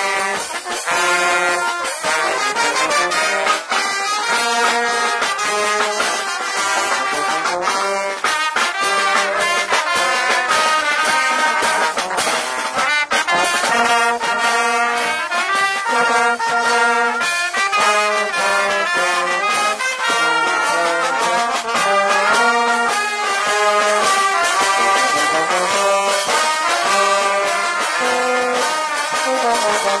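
Live fanfare brass band playing a tune: trumpets, trombones, saxophones and a euphonium-type horn, with a drum keeping the beat. The horn plays right beside the microphone.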